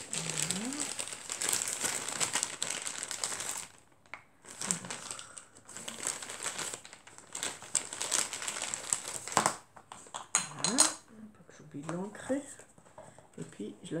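Clear plastic bag crinkling as it is handled and rummaged through, in two long bouts with a brief pause about four seconds in. Near the end the crinkling stops and a voice hums briefly.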